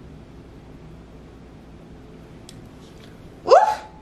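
Quiet room tone for about three seconds, then a woman's short, loud exclamation "ooh" that rises sharply in pitch near the end.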